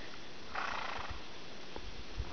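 A single short breathy exhale, about half a second long, over faint steady background noise.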